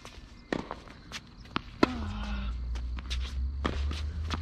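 Tennis rally on a hard court: sharp pops of the ball off racket strings and off the court surface, with the players' footsteps. The loudest strike, a little under two seconds in, is followed by a short grunt.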